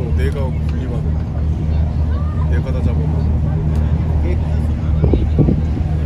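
Steady low drone of a passenger ferry's engine, with people's voices chattering over it.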